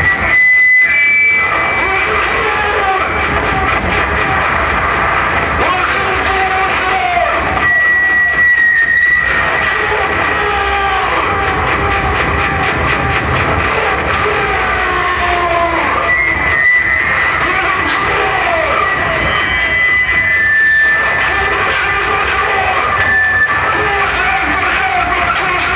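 Live harsh noise from electronic gear: a loud, dense wall of distorted noise with wavering pitched tones and a held high whine, broken by a few brief, sudden cuts.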